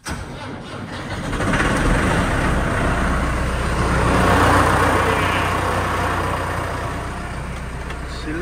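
Diesel tractor engine cold-starting at minus 15 degrees with two jump packs boosting the battery. It fires right away, gets louder over the first couple of seconds, then runs on steadily, easing off slightly toward the end.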